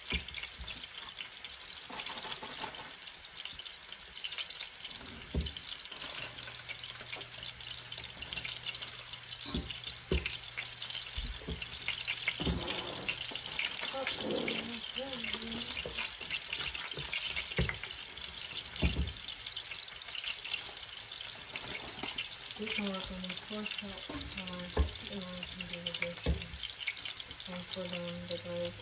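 Meat sizzling in a large skillet on the stovetop, a steady frying hiss throughout. Scattered sharp clicks and knocks come from a spatula scraping and tapping a stainless steel mixing bowl as batter is spooned out.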